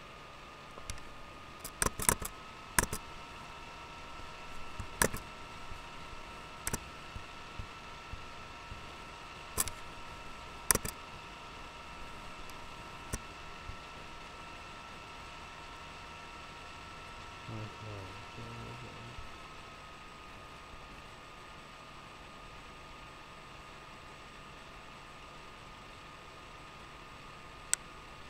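A steady faint electrical hum in a small room, with scattered sharp clicks in the first ten seconds or so, and a brief low murmur of a voice about 18 seconds in.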